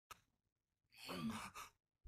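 Faint breathy sigh-like vocal sound, about half a second long, with a short second breath just after it. There is a brief click at the very start.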